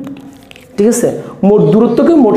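A man speaking in short phrases after a brief pause of about a second.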